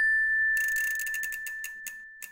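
Logo sound effect: a single bell-like chime tone ringing on and slowly fading, joined about half a second in by a rapid run of ratchet-like clicks that slow down and trail off.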